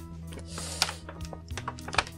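Stiff plastic packaging crackling and clicking in quick irregular snaps as a trading card is worked out of its plastic holder, with background music playing underneath.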